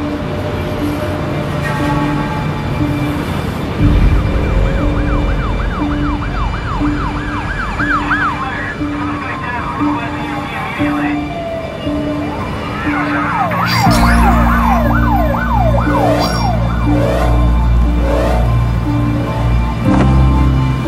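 Emergency vehicle siren yelping, sweeping fast up and down about three times a second, then a long falling wail, then yelping again, over a steady pulsing beat. A deep rumble comes in about two-thirds of the way through.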